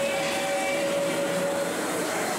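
A dark ride's show audio recorded on an old camcorder from the ride vehicle: a steady hissing rumble with one held mid-pitched tone that stops near the end.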